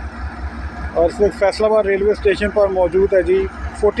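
A voice speaking Urdu over a steady low rumble, with a pause at the start and another near the end.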